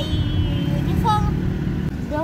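Steady low road and engine rumble inside a moving car's cabin, with a child's voice heard briefly near the start and again about a second in.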